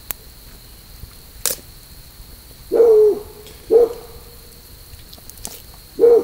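An owl hooting: a hoot held about half a second that drops in pitch at its end, halfway through, a short hoot a second later, and another right at the end. A single sharp click sounds about one and a half seconds in, over a faint steady high tone.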